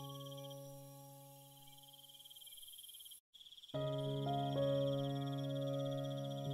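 Slow, soft piano music: a held chord dies away, the sound cuts out briefly just past three seconds in, and a new low chord begins about half a second later. A steady high chirring runs beneath the piano.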